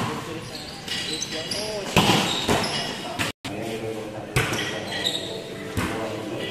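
A volleyball being struck by players' hands and forearms during a rally: a handful of sharp smacks, one to two seconds apart, each trailing off in a short echo. Players' voices call out between the hits.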